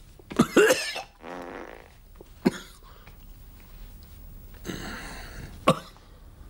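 A person coughing in several separate bursts, with breathy sounds between them.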